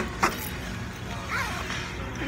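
Handling noise from a phone being moved and covered: two sharp knocks about a quarter second apart, then a steady low rumble of room noise.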